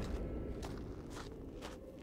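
Footsteps on sandy, gravelly ground, about two steps a second, over a low rumble that fades away.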